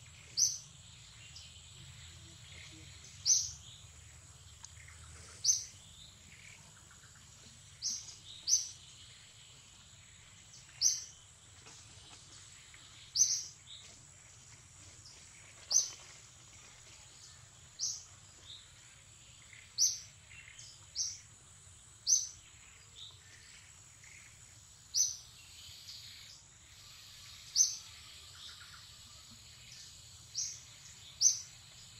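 A bird giving short, sharp, high chirps about every two seconds, repeated all through. A faint steady high insect drone runs underneath.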